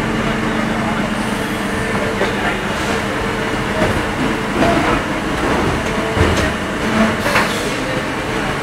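Factory machinery running around an injection moulding machine and its Wittmann take-out robot: a steady hum with a low held tone, broken by a few short clicks and hisses.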